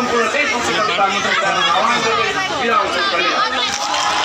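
Large crowd of protesters talking over one another: a dense, steady babble of many voices with no single voice standing out.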